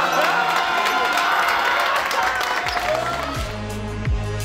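Backing song with a singing voice, with players' cheering and shouting mixed in; a deep bass beat comes in near the end.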